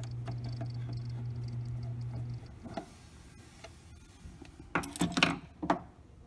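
A screw being undone with a screwdriver in the metal chassis of an NAD 523 CD player. A steady low hum with faint fine ticking runs for the first two seconds or so and then stops. About five seconds in comes a short clatter of sharp clicks from small hard parts.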